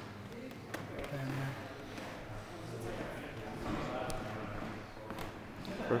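Low, indistinct voices in a hall, broken by a few sharp clicks of Subbuteo play at the table, with the loudest knock near the end.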